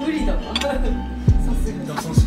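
Metal fork set down with a clink on a ceramic plate, about half a second in, over background hip-hop music with a deep kick drum that drops in pitch.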